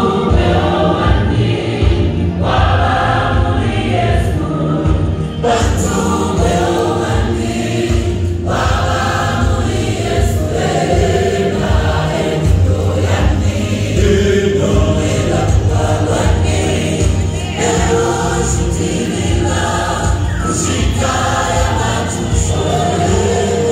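Gospel choir singing live with instrumental backing, in sung phrases of a few seconds each over a steady bass line.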